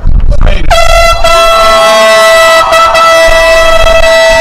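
Air horn blown in the crowd as a graduate's name is called: one long, steady, very loud blast that starts just under a second in and is still sounding at the end, with a fainter wavering tone beneath it.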